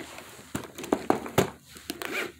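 Boxed toys being handled and set down on a hard floor: about five sharp taps and knocks of cardboard and plastic packaging, with handling rustle between them.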